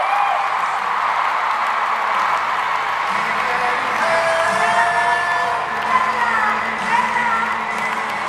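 Large arena crowd cheering, screaming and whooping, with music coming in underneath from about three seconds in.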